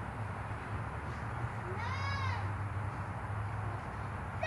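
A single short, high-pitched cry about two seconds in, rising and then falling in pitch, most likely a baby in the audience, over a steady low hum.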